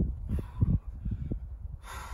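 A boulderer's hard, effortful breathing while hanging on an overhanging boulder problem, with two sharp hissing exhales about half a second in and near the end. A low, uneven rumble runs underneath throughout.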